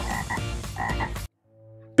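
Frog croaking sound effect: a quick run of rough croaks that cuts off suddenly about a second and a quarter in.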